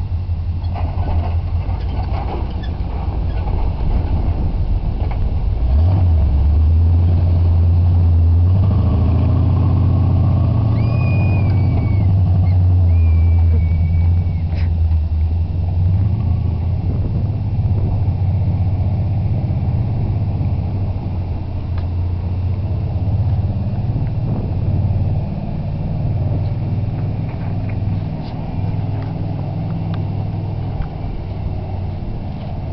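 Lifted 4x4 truck's engine rumbling as it drives off and crawls over dirt mounds. It grows louder a few seconds in, is loudest for several seconds, then eases off and wavers as the truck moves away.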